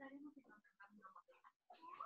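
Near silence on a video call, with only a faint, broken voice in the background.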